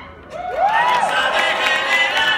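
Audience cheering and whooping in a break in the Latin dance music, with one rising-then-falling whoop standing out about half a second in.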